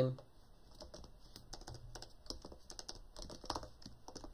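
Typing on a computer keyboard: an irregular run of light key clicks as a line of code is typed.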